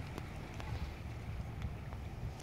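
Wind rumbling on a handheld phone microphone, a steady low buffeting with faint outdoor background noise and a couple of small clicks.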